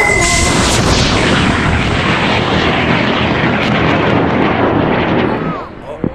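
Solid-fuel L850 first-stage motor of a two-stage high-power rocket lifting off: a loud rushing roar that steadily loses its treble and fades as the rocket climbs away. It dies out about five and a half seconds in.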